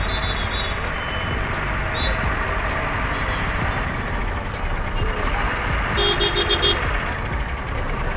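Busy street traffic at a standstill: vehicle engines running with steady traffic rumble. Short horn toots sound near the start and about two seconds in, and a rapid pulsing horn sounds for under a second about six seconds in.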